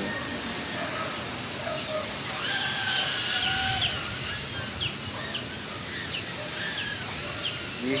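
Wind blowing ahead of a rainstorm, with a stronger gust from about two and a half to four seconds in. Small birds chirp now and then over it.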